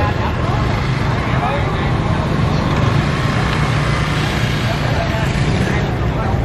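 Street noise: a steady low rumble of motorbike and traffic engines under the scattered chatter of a crowd.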